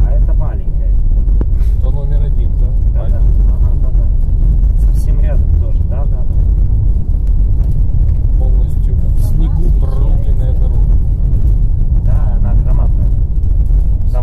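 Steady low rumble inside the cabin of a Honda Pilot driving on a snow-covered road: engine and tyre noise. Faint talk can be heard at times.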